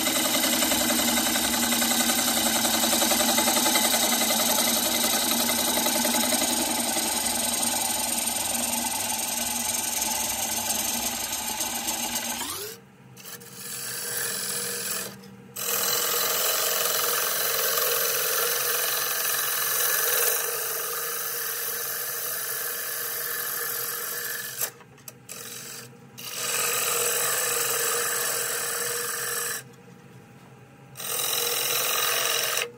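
Gouge cutting California pepper wood on a spinning wood lathe: a steady, rough scraping as shavings come off the outside of the dish. In the second half the cut stops for a moment several times and restarts as the tool is lifted off the wood.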